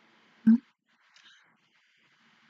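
A woman's single short, loud whimpering sob about half a second in.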